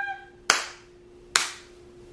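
Two single hand claps, a little under a second apart, each with a short fading ring, beating out emphasis.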